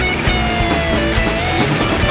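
Instrumental rock music: a gliding guitar melody line over strummed guitars, bass and a steady beat.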